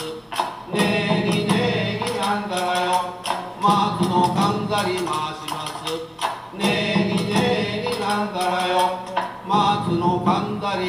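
Men chanting a repeated folk-song phrase in unison, with regular percussion strikes, as accompaniment to a traditional Japanese folk dance. There is a short break in the chant just after the start and another about six seconds in.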